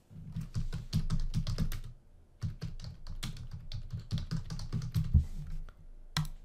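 Typing on a computer keyboard: a quick run of key clicks, pausing briefly about two seconds in, then going on.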